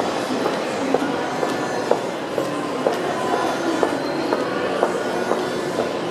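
Footsteps on a hard floor, an even walking pace of about two steps a second, over a steady hubbub of mall ambience.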